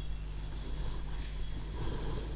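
Soft, repeated rubbing and rustling over a steady low hum.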